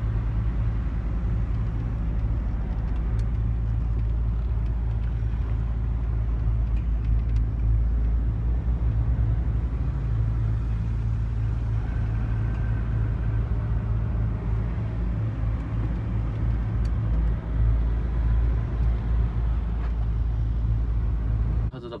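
Steady low drone of a lorry's diesel engine and road noise heard from inside the cab as the truck moves slowly in traffic.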